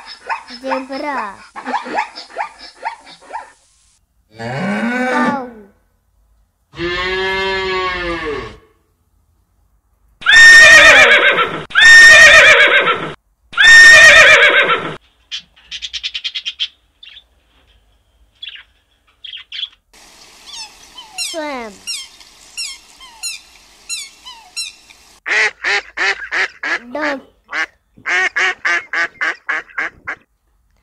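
A run of different animal calls, one after another. Harsh pitched calls come first, then three very loud screeches about two seconds apart near the middle, light bird chirps after that, and near the end a quick series of Canada goose honks.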